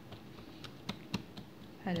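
Light, irregular taps and clicks of hands pressing and stretching a thin sheet of dough flat on a countertop, about five sharp ticks over two seconds.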